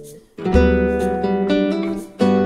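Solo nylon-string classical guitar playing a bossa nova accompaniment: after a brief gap, a chord with a low bass note is plucked about half a second in and rings on while the upper notes change above it.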